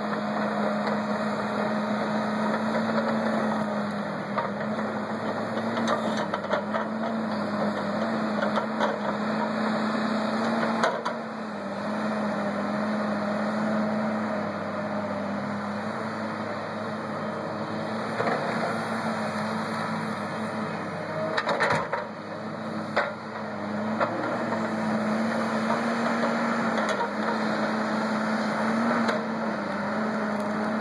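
Tracked hydraulic log loader's diesel engine running steadily as the grapple lifts and swings logs, its pitch wavering slightly with the hydraulic load. A few knocks come about two-thirds of the way through.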